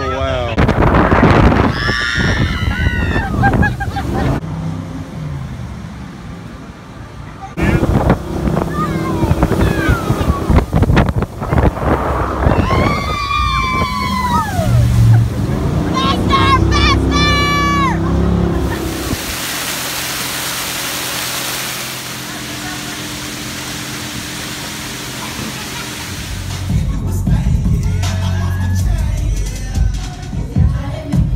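Excited shouting and whooping from people riding in a motorboat, over the boat's engine. About two-thirds of the way through this gives way to a steady rush of wind and water for several seconds as the boat runs fast.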